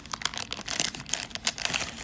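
Crinkling of a Hot Wheels Mystery Models foil blind bag handled by hand as a card is pulled out of it: a dense run of quick crackles, busiest from about half a second in.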